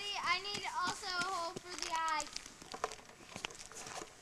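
A young girl's high voice in wordless sing-song vocalising for the first two seconds or so, then a few scattered short clicks.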